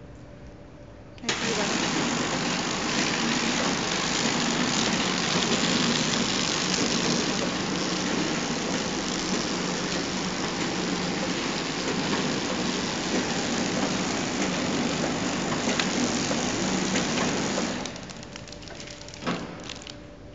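A horizontal flow-wrapping machine running with a loud, steady mechanical noise. The noise switches on abruptly about a second in and cuts off abruptly near the end, followed by a brief knock.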